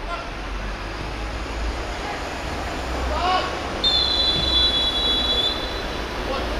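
Referee's whistle blown once in a long steady blast of about a second and a half, starting about four seconds in, preceded by a shout.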